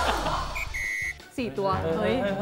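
Laughter fading out, then an electronic beep sound effect: a short high beep followed by a slightly longer steady one.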